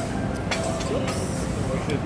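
Busy restaurant table ambience: indistinct background voices over a steady low rumble, with a light clink of tableware about half a second in.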